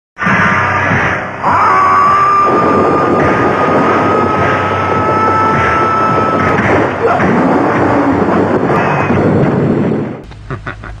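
Kung fu film soundtrack: a loud, dense rushing noise, with a steady high tone held for about five seconds from early in the clip.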